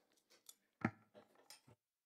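A few faint clicks and rustles of handling picked up by a desk microphone, the loudest just under a second in. The sound cuts off suddenly near the end, as the microphone feed goes dead.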